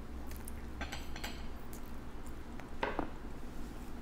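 A few light clicks and taps against a glass dish, a cluster about a second in and a louder one near the end.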